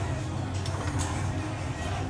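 Steady low hum of a running kitchen appliance, with a few light clicks and knocks as a pan of baked fish is handled.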